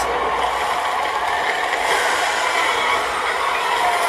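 Movie trailer soundtrack playing a steady, dense wash of rattling, mechanical-sounding effects.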